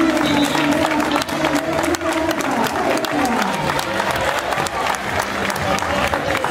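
A roadside crowd of spectators clapping steadily to encourage passing runners, with voices underneath.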